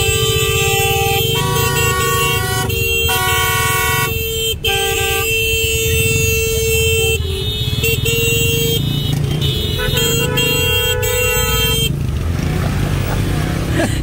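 Vehicle horns held down in stuck traffic, long continuous honks that overlap and change note from moment to moment, over the low running of engines. The honking stops about twelve seconds in.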